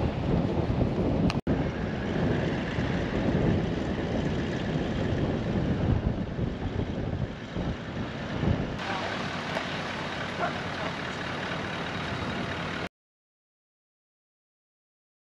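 Strong gusty wind buffeting the microphone in a loud rushing roar that cuts out near the end.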